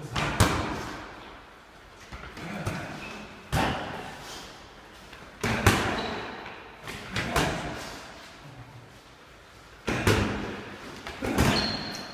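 Boxing gloves thudding against a sparring partner's gloves and guard during combination drills: sharp punches landing singly or in quick pairs every second or two, each with a short echo off the hall.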